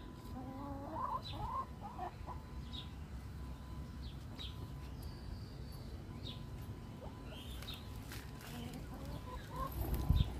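Faint bird calls: a few short calls that bend in pitch in the first couple of seconds, with small high chirps scattered through, over a low background hum.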